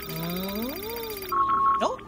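Cartoon electronic gadget sound effect of a paper-dating device at work: a warbling electronic tone with a sweep that rises and then falls, then three quick beeps as it gives its reading.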